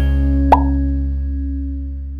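The last held chord of a short intro jingle rings out and slowly fades. About half a second in, a short pop sound effect sounds once.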